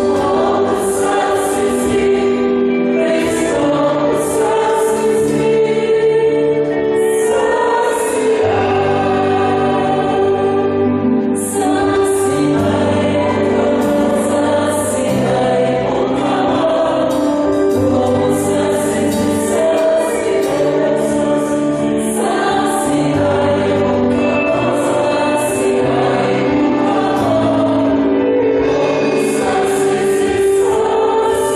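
A choir singing a hymn with instrumental accompaniment, held notes moving over a bass line that changes every second or two, with a steady beat throughout.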